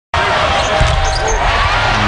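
Live basketball game sound: a ball bouncing on the court over steady arena noise.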